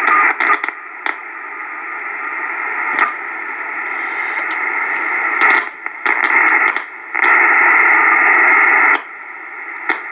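Kenwood TS-450S transceiver's receiver hissing with band static through its speaker. The noise jumps louder and drops away several times as the rear antenna connector is pressed with a screwdriver, with a few faint clicks. The signal cutting in and out is the sign of a bad antenna connector or a broken wire going to it.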